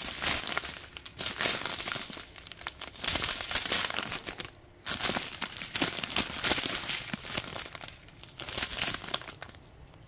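Small plastic bags of diamond painting drills crinkling as they are handled and turned over one after another, in irregular spells with short pauses between.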